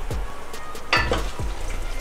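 Food frying in oil in a stainless steel pressure cooker pot, with a soft steady sizzle as a wooden spatula stirs green chillies and meat. There is one sharp knock of the spatula against the pot about a second in.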